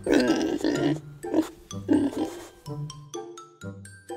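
Background music with steady notes and a bass line, over which loud, wet chewing noises of corn being eaten on the cob come in bursts through the first half.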